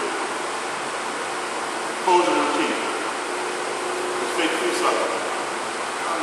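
Steady background hiss with two short vocal sounds, one about two seconds in and another about four and a half seconds in.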